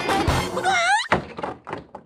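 Upbeat music ends on a quick rising whistle-like glide, then a single heavy thunk as wooden barn doors slam shut, followed by a few fainter knocks dying away.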